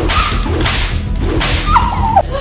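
Cane whipping strokes: three swishing lashes about two-thirds of a second apart.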